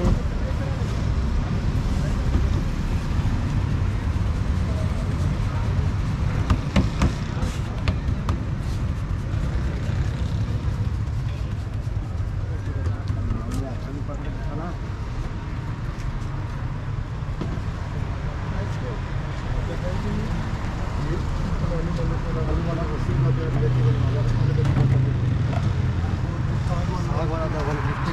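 Roadside street ambience: a steady low traffic rumble with indistinct voices in the background, and a few sharp knocks about seven seconds in.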